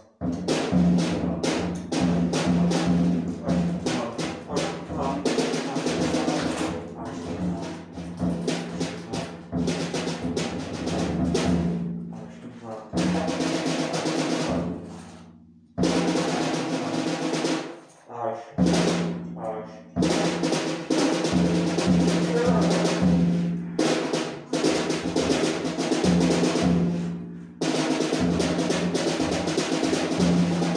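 Improvised noise music: rapid, dense percussive strikes over a steady low drone, breaking off and starting again several times.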